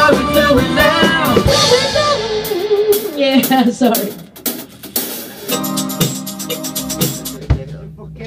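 Live band in rehearsal: vocals over drum kit, guitar and keyboards. About four seconds in, the singing stops and the drums play a few sharp hits under a held chord as the song winds down, the sound fading near the end.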